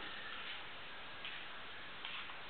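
Quiet steady room hiss, with one faint click a little past the middle.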